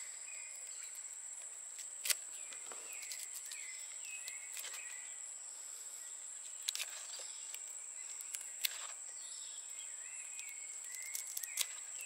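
Steady high-pitched insect drone with short chirping calls repeating over it, and a few sharp crackles as the dry lower leaves are peeled off a pineapple crown by hand.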